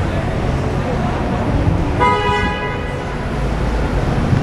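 A vehicle horn sounds once halfway through, a steady tone lasting about a second, over the steady noise of street traffic.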